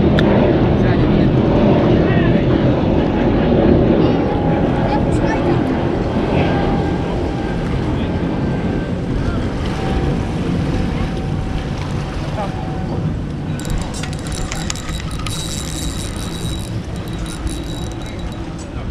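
A low engine rumble, loudest at the start, slowly fading over the seconds. About three-quarters of the way through comes a few seconds of rapid high clicking.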